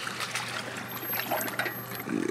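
Shallow water trickling and lapping at a slipway as a boat trailer is backed into it, over a steady low hum.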